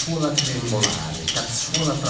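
Quick, irregular taps and clinks of craftsmen's hand tools striking their materials, over a low male voice.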